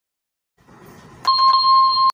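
Subscribe-button animation sound effect: a faint swish, then two quick clicks and a bright electronic bell ding that holds steady for under a second and cuts off abruptly.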